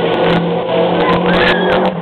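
Water jets of a large fountain display spraying and splashing down, a continuous rushing noise over a steady low hum. A brief high wavering sound rises and falls near the end.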